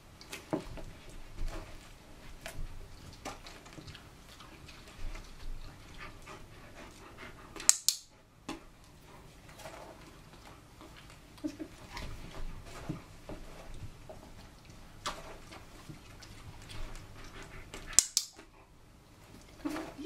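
A handheld dog-training clicker clicking twice, about ten seconds apart, each a sharp quick double click that marks the greyhound's foot on the target mat as correct. Faint small shuffling sounds between the clicks.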